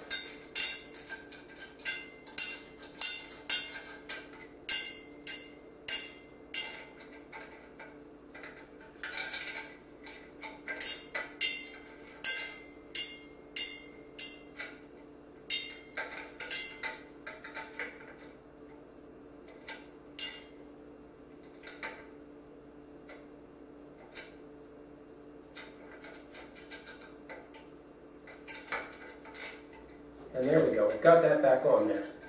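Metal chandelier chain clinking and rattling as it is handled and links are joined, with many sharp clinks in quick succession for the first two thirds, then only a few. A steady low hum runs underneath.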